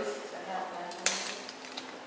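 A door latch clicks sharply once about a second in as an interior door is opened, followed by a few faint ticks.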